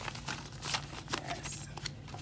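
Paper banknotes rustling and flicking in the hands as cash is counted out: a quick run of short, crisp rustles.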